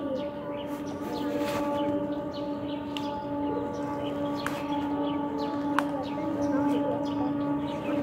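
A steady drone holding one pitch, with overtones, and two sharp clicks around the middle.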